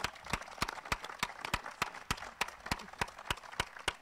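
A small group of people applauding, the separate hand claps standing out from one another.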